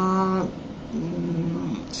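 A woman's drawn-out hesitation sounds, two held filler noises at an even pitch: a sustained 'eh' in the first half second, then a lower hummed 'mm' in the second second.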